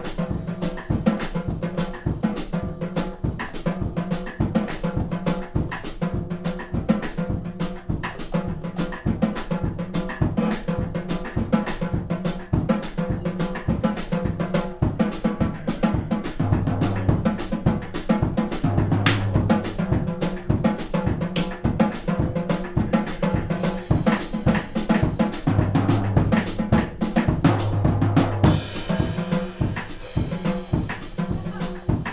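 Jazz drum kit playing a steady calypso groove on snare, bass drum and cymbals, ending in a cymbal wash near the end.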